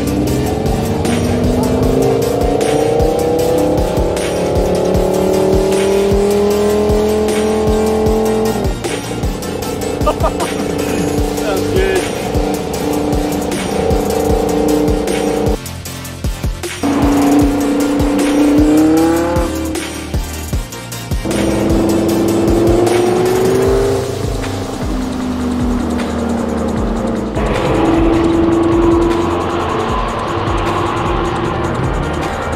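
Car engines accelerating through the gears: the pitch climbs over several seconds, then drops sharply at each upshift, several times over.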